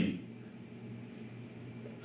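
A pause in speech that holds only faint steady background hiss of the room and microphone, with a thin high-pitched whine running through it.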